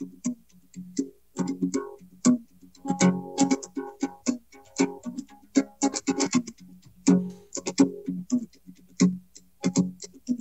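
A solo guitar jam, played live: single plucked notes and short chords in a loose, uneven rhythm, with the same low note returning again and again.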